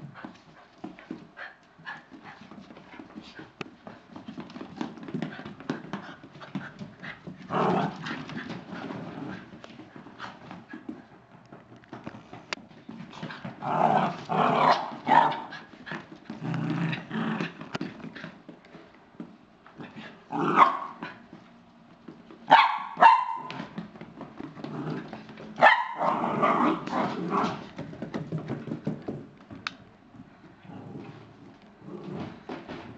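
Small Chinese crested dogs barking and yipping in short bursts that come every few seconds, loudest in the second half. Faint tapping of their shod paws on the floor runs between the barks.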